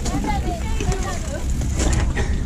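Indistinct voices of people talking nearby, over a steady low rumble of wind on the microphone and a few light knocks.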